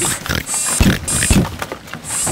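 Cartoon pig guards oinking, with two short low sounds around the middle.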